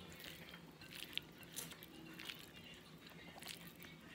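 A person chewing a mouthful of soft food (rice, pasta and chicken) close to the microphone: faint, irregular wet mouth clicks and smacks.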